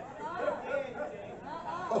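Faint, indistinct voices talking quietly, well below the level of the microphone speech.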